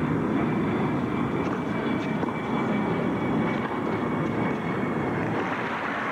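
Tennis ball struck by rackets during a rally: a few faint sharp pops a second or two apart, under a steady, loud, low rumbling noise of broadcast crowd and ambience.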